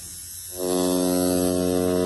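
Audio-driven coil tattoo machine (Electric Shark Innercoil) buzzing at about 90 Hz, set for a stiff hit at roughly a 4 mm stroke. It is silent at first, then starts up again about half a second in and runs with a steady hum.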